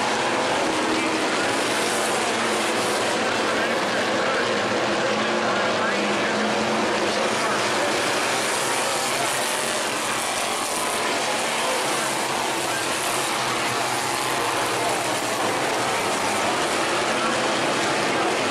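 A field of Thunder Stock dirt-track race cars running hard around the oval, many engines blending into one loud, steady sound.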